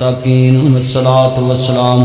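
A man's voice chanting an Arabic supplication over a microphone in long, held melodic notes, with short slides in pitch between them.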